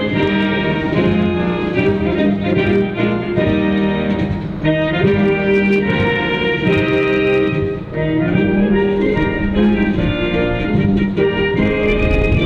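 A military wind band of brass and woodwinds playing a continuous piece of music, with held notes and full chords.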